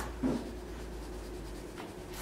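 Drawing marker scratching on a large sheet of paper pinned to a wall: a stroke ends just as the sound begins, and a soft knock follows about a quarter second in. After that there is only low room hum, with a faint brief scratch near the end.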